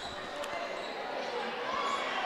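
Low murmur and room noise of a high school gym crowd between plays, with one faint basketball bounce about half a second in as the ball is passed to the free-throw shooter.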